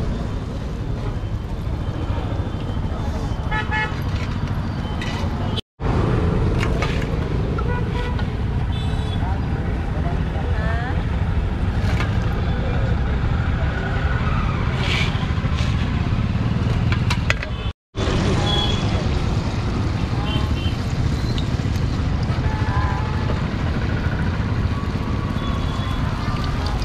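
Steady rumble of road traffic with occasional short vehicle horn toots and indistinct voices. The sound cuts out completely twice, very briefly.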